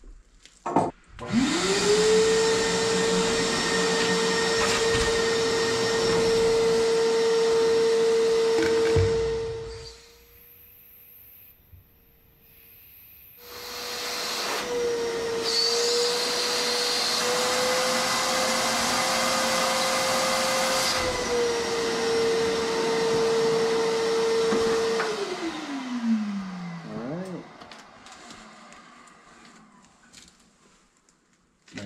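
An electric motor spins up about a second in and runs at a steady pitch, stops for a few seconds near the ten-second mark, then starts again. Near the end it winds down, its pitch falling as it coasts to a stop.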